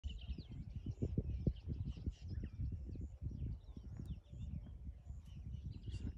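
Assorted birds chirping and calling in short, gliding notes, over an uneven low rumble of wind on the microphone.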